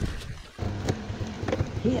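Boots scuffing and knocking on leaf-covered rocks as the rider reaches the fallen dirt bike, over a low rumble that starts about half a second in, with a short spoken word near the end.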